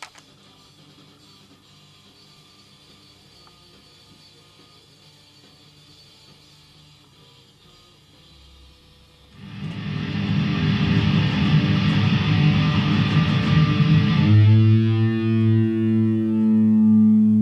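Distorted electric guitar through an amplifier. For about nine seconds there are only faint steady tones and hum. Then loud, fast, distorted playing starts, and about fourteen seconds in it settles into a held low chord.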